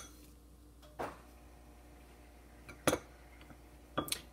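A spoon knocking against a dish of melted chocolate: two short clinks, the louder near the end.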